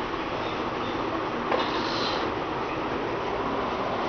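A RapidBot 2.0 desktop 3D printer running with a steady mechanical whir from its fans and motors, and a short click about one and a half seconds in.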